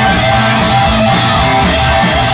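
Live rock band playing, with electric guitars, keyboard and drums.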